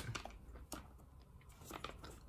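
A few faint clicks of nylon NATO straps' metal buckles and keepers being handled on a tabletop.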